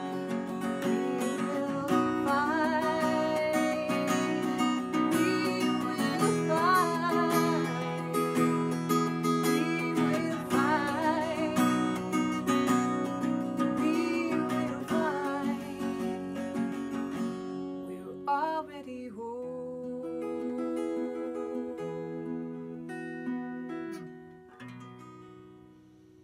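Acoustic guitar strummed under a woman's singing voice, the closing bars of a song. About two-thirds of the way in the voice stops and the guitar chords carry on alone, fading away near the end.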